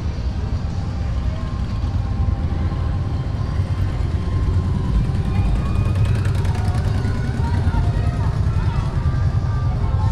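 Steady low rumble of vehicle engines from the street, with indistinct voices in the background.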